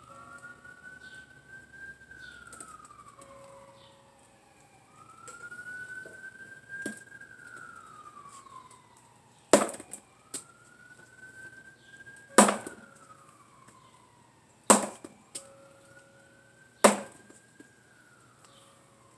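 A faint emergency-vehicle siren wails, rising and falling slowly about four times. In the second half, four sharp strikes of a talwar sword against a taped wooden practice pell, about two seconds apart, are the loudest sounds.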